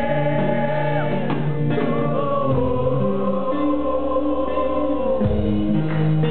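Live acoustic rock band playing, with a male lead singer holding long, slightly wavering notes over sustained guitar and bass chords.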